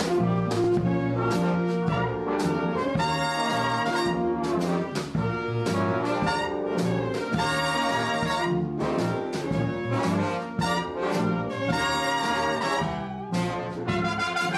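Swing big band playing, the trumpet section to the fore: short punched chords alternate with longer held ones.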